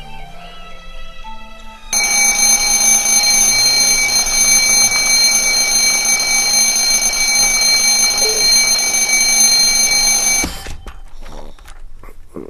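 Alarm clock bell ringing loud and unbroken from about two seconds in, cutting off suddenly near the end. It is followed by a few sharp knocks and clatter as the clock ends up on the floor.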